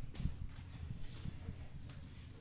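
Handling noise from a handheld microphone being passed from one person to another: a few low knocks and rubs, the loudest about a quarter second in.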